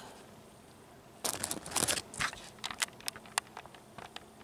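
Irregular crunching and crackling of dry leaf litter and twigs underfoot, a rapid run of short crunches starting about a second in and thinning out near the end.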